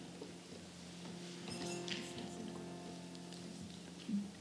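A harmonium holding a quiet, steady low chord, with a few faint light clinks about one and a half to two seconds in.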